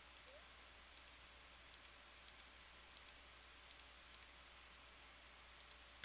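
Faint computer mouse clicks, a dozen or so, many in close pairs, over near-silent room tone with a low hum.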